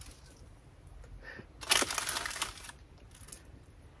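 Small seeds rattling out of a paper seed packet as it is shaken over a plastic tub, a quick run of fine dry clicks lasting about a second, near the middle.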